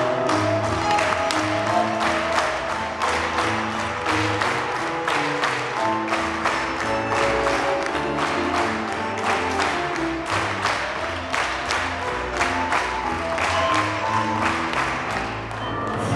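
Live tango played by piano, double bass and bandoneón in an instrumental passage between sung lines, with sharp hand claps keeping a steady beat of about three a second.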